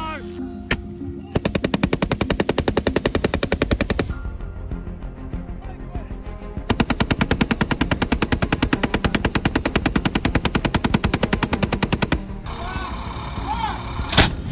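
Automatic machine-gun fire in two long bursts of rapid, evenly spaced shots: one of about three seconds starting just over a second in, and one of about five and a half seconds starting near the middle.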